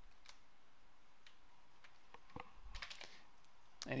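Scattered computer keyboard key clicks: a few single presses spaced about a second apart, then a quick run of several clicks near three seconds in, over faint room hiss.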